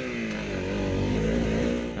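Dirt bike engine running under way on a dirt trail, its pitch rising and falling as the throttle is worked.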